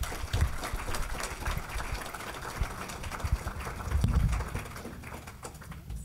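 Audience applauding: a dense patter of many hands clapping that thins out near the end.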